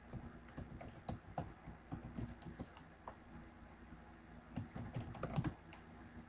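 Faint computer-keyboard typing as a file name is entered: irregular keystrokes, one run in the first few seconds and a short second flurry near the end.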